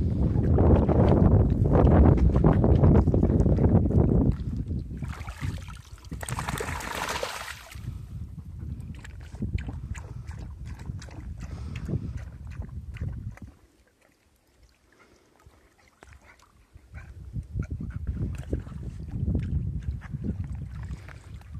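A dog moving about in a shallow muddy puddle, with the water sloshing and splashing around it. A heavy low rumble of wind on the microphone fills the first few seconds. A brief hiss follows, and the sound drops almost to silence for a few seconds past the middle.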